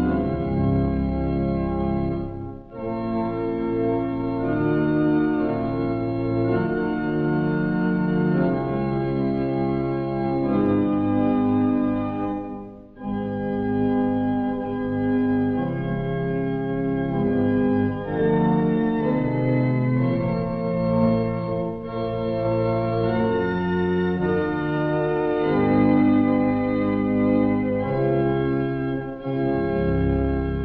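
Church pipe organ playing slow, sustained chords that shift every second or two, with two short breaks between phrases: one about two and a half seconds in, one near thirteen seconds.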